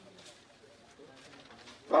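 Faint room background with a few soft, indistinct sounds; a man's voice, amplified through a microphone, starts again near the end.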